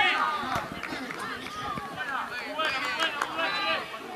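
Several people shouting and cheering in celebration, with overlapping high, arching calls and a louder burst of shouts near the end.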